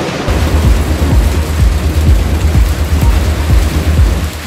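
Heavy rain pouring down, a dense steady hiss, with a deep low rumble underneath from about a quarter second in.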